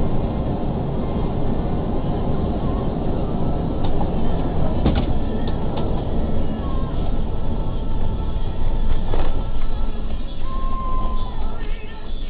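Steady tyre, engine and wind noise heard inside a vehicle cruising on a sealed highway, with a brief gusting surge about five seconds in as a road train passes close alongside.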